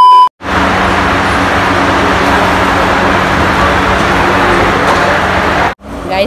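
A steady test tone from a colour-bar screen cuts off just after the start. A moment later a loud, even rushing noise begins, runs for about five seconds and stops abruptly.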